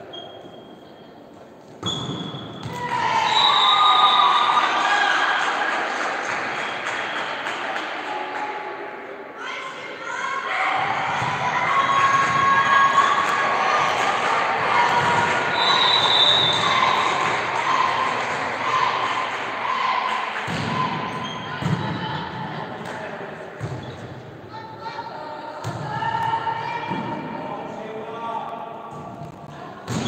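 Volleyball play in a large echoing sports hall: the ball thuds on hands and floor while players and spectators shout and cheer, loud and dense from about two seconds in.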